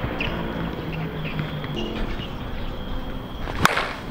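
A single sharp crack of an Anarchy Fenrir slowpitch softball bat striking a pitched softball, near the end.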